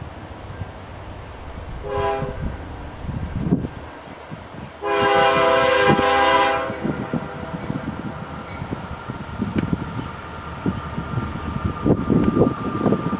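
Air horn of a CP ES44AC diesel locomotive sounding for a grade crossing as the train approaches: a short blast about two seconds in, then a longer, louder blast about five seconds in, each a chord of several notes. Wind rumbles on the microphone between the blasts.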